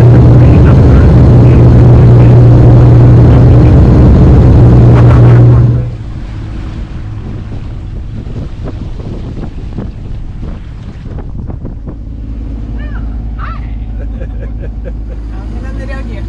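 Loud steady drone of a propeller airliner heard from inside the cabin, a deep hum from the propellers under a rushing noise. About six seconds in it cuts to a much quieter scene: a sailing yacht motoring on its engine, a steady low hum with wind on the microphone and water rushing past the hull.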